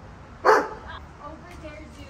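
A Doberman barks once, a single short, loud bark about half a second in.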